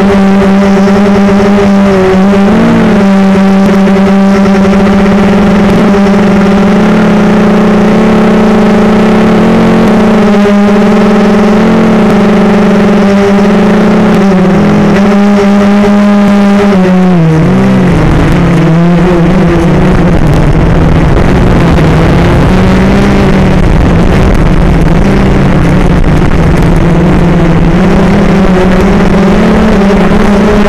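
Motor and propeller of an FPV model aircraft, heard through its onboard camera: a loud, steady hum with overtones whose pitch wavers with the throttle. About 17 seconds in the pitch drops and a rushing noise comes in beneath it, then the pitch rises again near the end.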